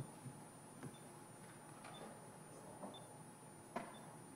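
Quiet room tone with a handful of soft, scattered clicks and taps from a laptop's keys or trackpad being worked.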